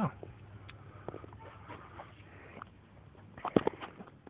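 A faint hiss with a few scattered clicks, then a brief cluster of sharp knocks and clicks about three and a half seconds in.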